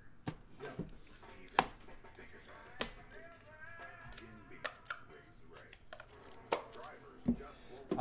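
Scattered light clicks and taps as a metal trading-card tin and cards are handled and set down, the sharpest about a second and a half in.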